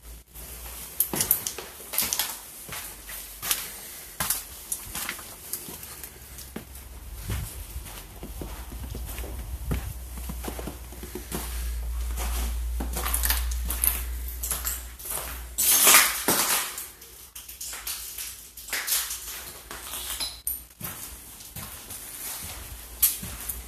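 Footsteps crunching and scraping over debris and grit on a bare floor, in irregular steps, with a louder scraping burst about three quarters of the way through.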